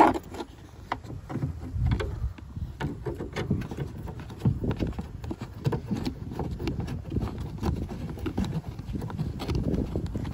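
Close handling noise: a hand rubbing and knocking against the plastic trunk trim while turning a plastic screw fastener by hand, with irregular small clicks and scrapes over a low rustle.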